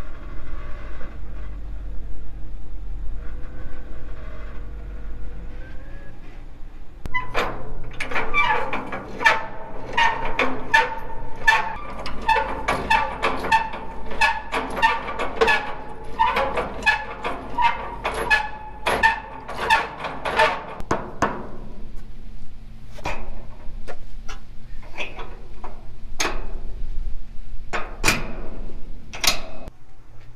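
A pickup engine runs low under metal-on-metal clanking from a gooseneck trailer hitch and steel stock trailer being coupled. It starts with a rumble and a few faint squeaks, breaks into a dense stretch of ringing clanks and rattles from about seven seconds in, and thins to scattered clanks near the end.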